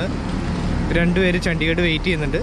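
A person speaking from about a second in, over a steady low rumble of outdoor background noise.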